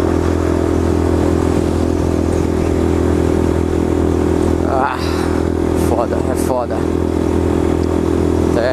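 Yamaha Fazer 250's single-cylinder engine running at a steady highway cruise, an unchanging drone with wind noise rushing over the microphone. Brief voice-like sounds come through about five and six and a half seconds in.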